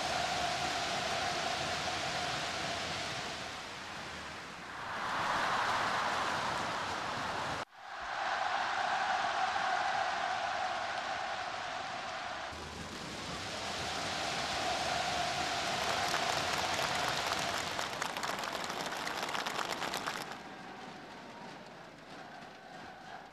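A large stadium crowd cheering and clapping in long swells. The sound breaks off abruptly about eight seconds in, then picks up again, and dies down near the end.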